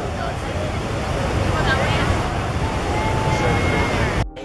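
Steady rush of ocean surf at Pipeline, with wind buffeting the microphone.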